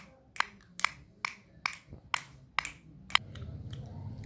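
Rose-ringed parakeet pecking halwa off a plate: a string of sharp beak clicks, about two a second. A low rustling rumble comes in near the end.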